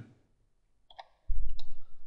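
A few sharp computer keyboard key clicks, with a low rumble starting about a second and a half in.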